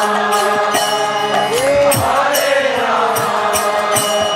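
Devotional mantra chanting (kirtan): a singing voice over a harmonium's sustained chords, the voice sliding through one long held note about halfway through. Small hand cymbals (kartals) strike in a steady rhythm throughout.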